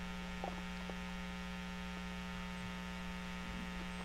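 Steady electrical hum with a stack of overtones, the strongest a low buzz just under 200 Hz, carried on the recording during a pause in speech.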